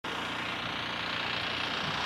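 A steady, unchanging mechanical hum with a hiss over it, like a motor running at a constant speed.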